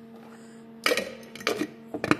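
Handling noise of a jar and tableware on a wooden table: a sudden sharp clatter about a second in, then two shorter knocks and scrapes, over a faint steady hum.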